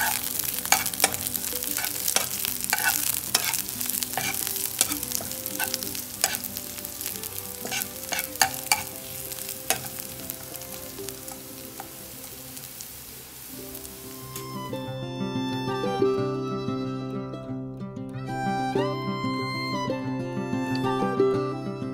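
Sliced onions and dried red chillies sizzling in hot oil in a nonstick pan, stirred with a steel spatula that clicks and scrapes against the pan. The sizzling stops about fourteen seconds in, leaving only background music.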